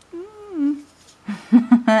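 A woman humming one short note that rises and then falls, a wordless hum between phrases, before she starts speaking again near the end.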